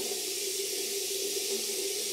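A bathroom sink tap running steadily into the basin, left on until the water runs hot. It is an even hiss of water with a faint steady hum under it.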